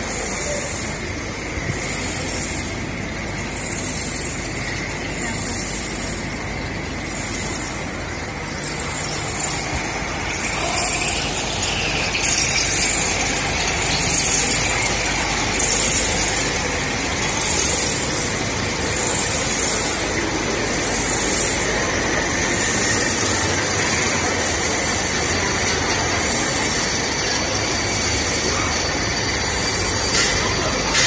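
Continuous biochar carbonization machine running in the plant: a steady mechanical noise with a rhythmic hiss that pulses roughly once a second.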